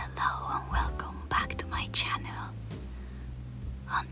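Soft whispered speech, with a steady low hum underneath.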